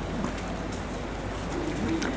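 Room tone in a pause of a talk: a steady low hum, with a few faint, short low tones, one near the end.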